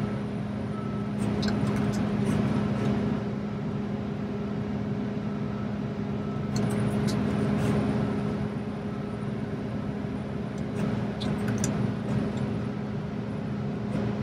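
John Deere 70 Series combine engine running steadily at high idle, heard from inside the cab, its hum swelling every few seconds as the feederhouse hydraulics repeatedly raise and lower the corn head during a raise-speed calibration. A few light clicks sound over it.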